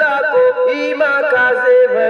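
A singer's unbroken vocal line of long held notes, ornamented with slides between pitches, in the style of an Urdu naat, an Islamic devotional song.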